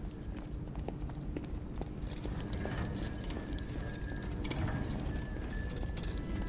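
Rhythmic clopping steps on a hard floor over a low, steady hum, with faint high tones coming in about halfway.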